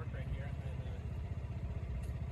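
Low, steady rumble of a slow-moving vehicle, heard from on board, with a fine even pulsing.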